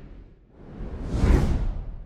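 Whoosh sound effects of a channel logo ident, with deep bass under them. The tail of one whoosh fades out just after the start, then a second swells to a peak a little past the middle and dies away.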